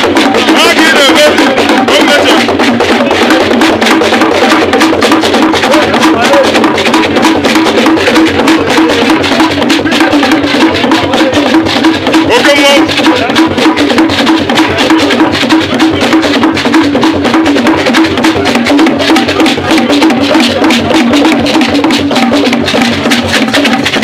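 A group of hand drums played live in a fast, steady rhythm, with voices calling out briefly near the start and about halfway through.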